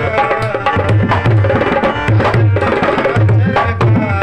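Dholak played by hand in a fast folk rhythm: deep booming strokes on the bass head recur in a repeating pattern under quick, sharp slaps on the treble head.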